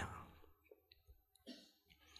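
Near silence in a pause between a man's spoken words: the last of his voice fades at the start, then a few faint short clicks.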